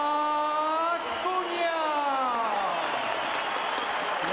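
Boxing ring announcer's drawn-out call of a fighter's surname. He holds one note for about a second, then stretches the last syllable into a long note that falls in pitch for about two seconds. Crowd cheering and applause run underneath.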